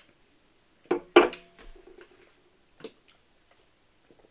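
A stemmed drinking glass set down on a wooden tabletop: two sharp knocks about a second in, the second the loudest, followed by a brief low ringing, and a softer knock near three seconds.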